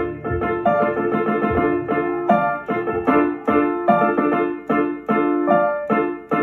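Digital piano played with both hands: chords struck about every half second in a steady pattern, with a melody line above them.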